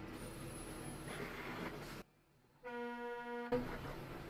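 Steady vehicle and road noise, a brief dropout, then a single steady vehicle horn blast lasting under a second, cut off with a sharp click.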